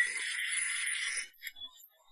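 Electronic hand-scanner sound effect: a steady high-pitched electronic tone lasting about a second and a half, which cuts off and is followed by a faint short blip.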